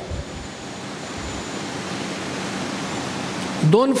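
Steady hiss of room noise with a faint low hum during a pause in a lecture; a man's voice resumes near the end.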